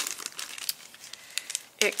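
Clear plastic bag crinkling as it is handled and folded, with scattered small sharp crackles. A woman's voice starts near the end.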